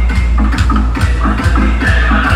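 Loud DJ music from a truck-mounted DJ sound system, heard up on the vehicle: heavy, booming bass with a steady beat of about two kicks a second under an electronic melody.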